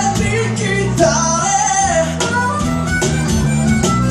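Live acoustic band playing: two strummed acoustic guitars, an electric bass and a cajon keeping the beat, with a harmonica played into a microphone carrying a bending melody line over them.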